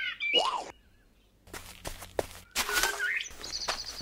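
Cartoon soundtrack: a brief vocal sound, a second of near silence, a few light clicks, and a short noisy burst with a rising squeak. Near the end comes a rapid, high-pitched bird trill.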